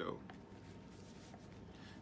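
The last spoken word ends a moment in, followed by faint scratchy rubbing, a handling noise, over quiet small-room tone.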